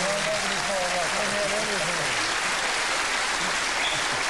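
Studio audience applauding steadily, with a man's voice over the applause for the first two seconds or so.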